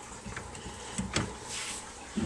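Sliding front of a reptile enclosure being closed, sliding in its track with a few light knocks, the sharpest about a second in.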